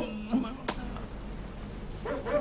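A brief pause in studio speech: low steady background hum and hiss, a short faint vocal sound about a third of a second in, and a single sharp click just after it.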